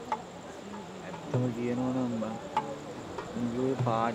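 Night insects, crickets among them, chirping steadily in the background, with a man's voice coming in near the end.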